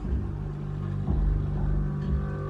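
A low, steady rumbling drone with held deep tones and a few soft low pulses, from the TV episode's soundtrack.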